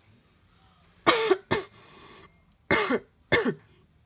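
A person coughing four times, in two pairs: two coughs about a second in, then two more about a second and a half later.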